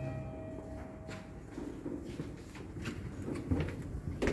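Lift arrival chime: a two-note electronic ding, its lower note ringing on and fading out about a second and a half in. After it, soft taps and shuffling footsteps.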